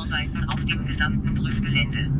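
Steady low road and tyre hum inside the cabin of the electric Mercedes Vision EQXX on the move, with a voice speaking German over it.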